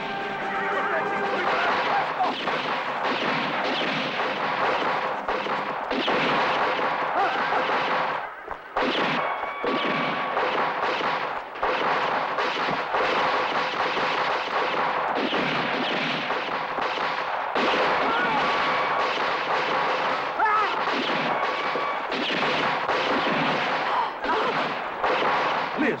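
Film gunfight soundtrack: revolver shots going off in dense, rapid succession, with a brief lull about eight and a half seconds in.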